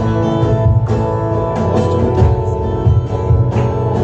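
Live acoustic guitar strumming with a cajon keeping the beat, in an instrumental passage without singing.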